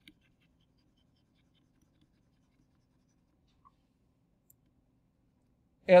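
Near silence: faint low room hum, with two tiny ticks in the second half.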